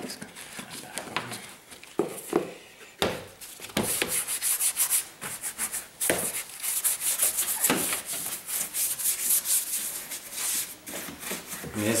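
A bristle detailing brush scrubbing wet, soapy painted and plastic panels in quick back-and-forth strokes. The strokes come in runs with short pauses between them.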